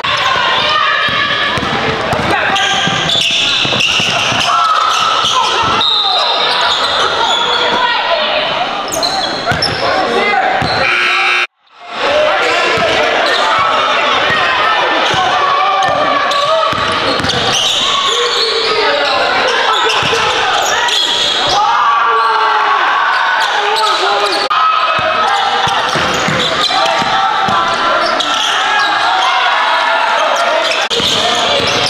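A basketball bouncing on a gym floor during play, among the voices of players and spectators, echoing in a large hall. The sound cuts out briefly near the middle.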